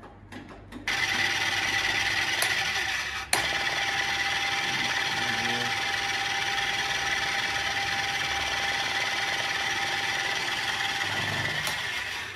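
Martin T25 spindle moulder and its roller power feeder switched on and running: a few clicks from the control buttons, then a steady loud whirring with a whine. A sharp click about three seconds in, after which a second steady tone joins the running noise.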